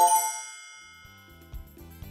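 A bright chime sounds at the start and fades slowly, its high tones ringing on. Soft background music with a light beat comes in about a second later.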